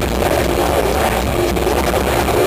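A metalcore band playing live at full volume: a dense, steady wall of distorted electric guitars, bass and drums, recorded from the crowd.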